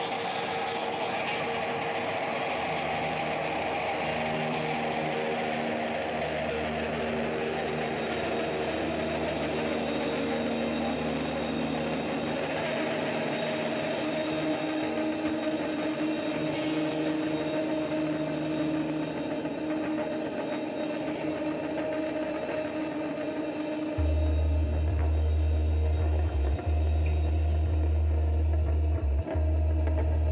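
Live psychedelic rock band playing a slow, beatless passage of long held, slowly shifting instrument tones. About three-quarters of the way through, a loud, deep electric bass comes in and the music grows louder.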